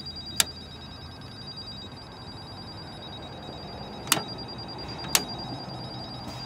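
Three sharp clicks from pressing the metal keypad and handling the handset of an outdoor GTL wall phone: about half a second in, then twice more about a second apart near the end. They sound over a faint steady high whine, and the phone gives no response: it doesn't work.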